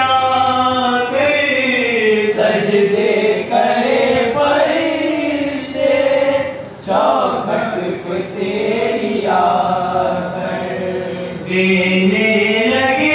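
Young male voices chanting an unaccompanied Urdu devotional recitation in praise of Abbas into a microphone. The voices sing in long, bending, held phrases, with short breaks between lines.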